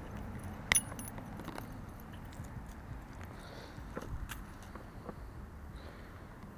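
A fishing lure and its hooks being handled while a small bass is unhooked: light metallic clinks and clicks, one sharper click about a second in and a few fainter ones later, over a low steady background rumble.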